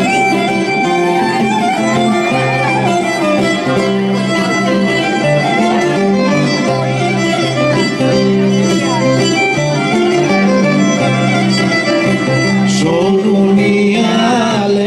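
Live Greek island folk dance music: a violin leads the melody over a laouto strumming steady chords.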